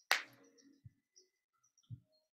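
Soundtrack of a promotional video playing faintly through a screen share: a sharp hit at the very start, then two soft low thumps, about one a second.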